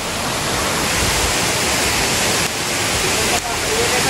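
Loud, steady rush of water from a shallow stream running over stones and rocks below a small waterfall.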